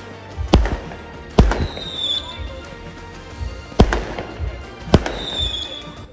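Fireworks going off: four sharp bangs at irregular intervals, with two falling whistles between them.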